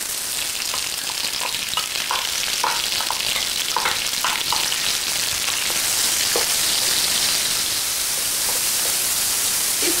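Sliced red onion sizzling in hot rendered bacon fat in an electric wok: a steady frying hiss that starts suddenly as the onion goes in. A few short crackles come in the first few seconds while a wooden spatula stirs the onion.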